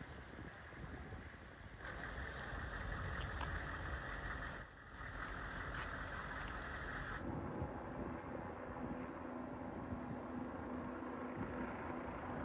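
Street sound of military Humvee engines running and tyres on wet pavement, with a steady low engine hum. The sound changes abruptly twice, about two and seven seconds in.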